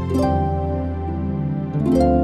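Slow new-age harp music: plucked harp notes ringing on over a sustained low drone, with new notes struck shortly after the start and again near the end.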